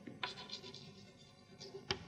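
Chalk writing on a blackboard: faint scratching strokes with short taps as the chalk meets the board, the sharpest tap near the end.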